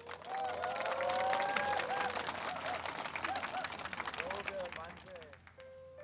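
Concert audience clapping and cheering, with shouts and whoops over the applause, dying away towards the end. A piano comes in with held notes just before the end.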